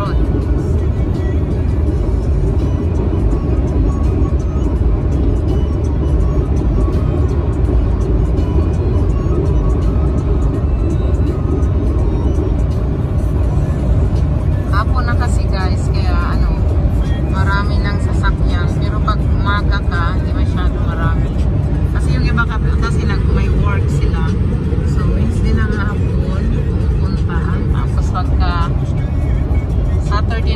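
Steady low road and engine rumble inside a car's cabin at highway speed. From about halfway through, voices or singing are heard over it.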